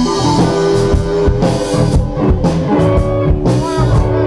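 Live southern blues-rock band playing: electric guitar holding notes over bass guitar and a drum kit, with a guitar note bending in pitch near the end.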